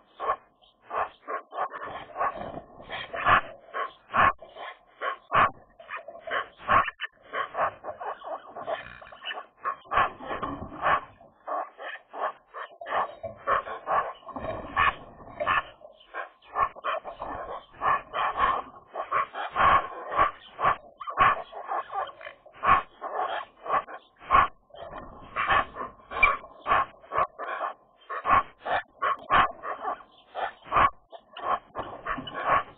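A group of Eurasian magpies calling to one another in a steady stream of short, varied calls, many in quick succession.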